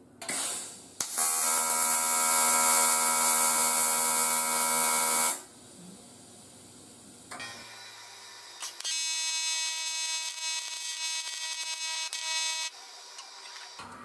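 AC TIG welding arc on thin aluminum buzzing as tack welds are laid: a loud, steady buzz of about four seconds, then after a pause a second, quieter buzz of about four seconds.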